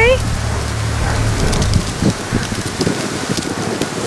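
Pear tree leaves and twigs rustling and crackling as pears are pulled from the branches, with a low rumble underneath that stops about a second and a half in.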